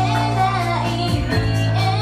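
Idol pop song performed live: young female voices singing a melody over loud backing music with sustained bass and a steady beat.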